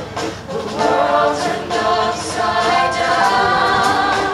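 Young mixed-voice show choir singing together into microphones, amplified through a stage PA, with a brief dip in loudness just after the start.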